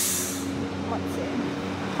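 City street traffic: a high hiss of air that cuts off about half a second in, then steady traffic noise with a faint hum.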